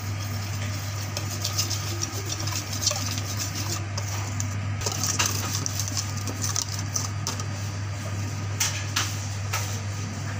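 Wire balloon whisk beating cake batter in a stainless steel bowl, its wires scraping and clicking against the metal. A steady low hum runs underneath.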